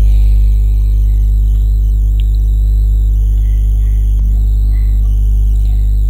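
Background music with a steady, loud low hum underneath.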